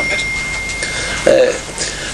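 A short low vocal sound, a brief murmur from a person, about a second in, over steady room noise, with a faint high steady whine that dies out partway.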